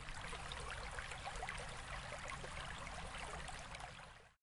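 Running water, like a small stream babbling, holding steady and fading out at the end.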